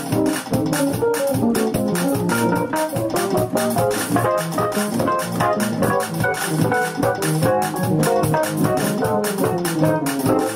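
Electronic keyboard playing a gospel song in E-flat with full, sustained chords and a steady rhythm.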